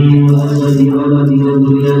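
A man's voice chanting an Arabic prayer in long, steady held notes.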